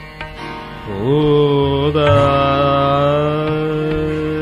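Hindustani classical khayal singing in Raag Darbari Kanhra by a male vocalist over a steady tanpura drone. About a second in, the voice slides up into a note and then holds it long and steady.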